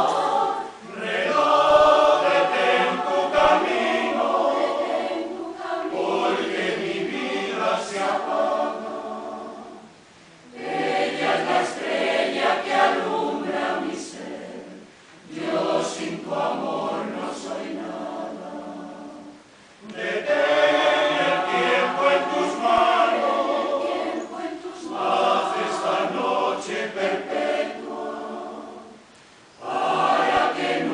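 Mixed choir of women's and men's voices singing, in phrases of several seconds broken by short pauses for breath.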